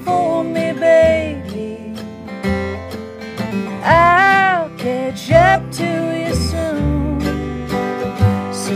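A woman singing a slow country song over her own acoustic guitar, with long, held vocal phrases about a second in and again around the middle.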